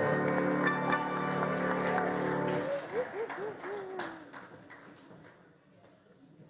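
A live church band holds the song's final chord for about two and a half seconds while the congregation claps. A brief bit of voice follows, and the applause thins out and fades to quiet by the end.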